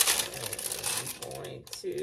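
Butcher paper crinkling and rustling as heat-pressed sublimation socks are handled and turned over, loudest at the start, with a few sharp clicks near the end.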